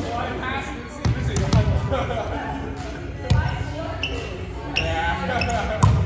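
A volleyball being struck and bouncing: four sharp smacks spread over the few seconds, the first about a second in and the last just before the end, echoing in a large gymnasium.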